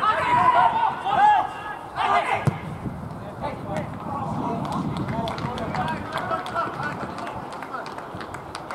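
Footballers shouting to one another during play, the calls loudest in the first couple of seconds and fainter after.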